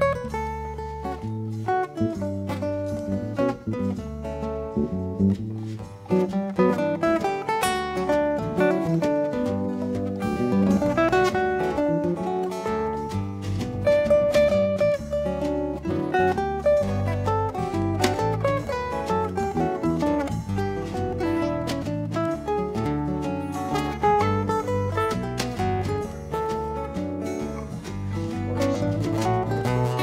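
Instrumental break of a live acoustic band: two acoustic guitars playing over electric bass and a djembe, with a melodic lead line on top.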